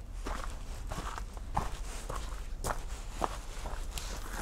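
Footsteps of a person walking at a steady pace outdoors, about two steps a second.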